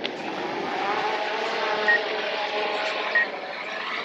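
DJI Air 2S quadcopter lifting off, its propellers a steady multi-tone buzzing whine that rises slightly in pitch in the first second or so and then holds as it climbs to a hover. Two short high beeps sound partway through.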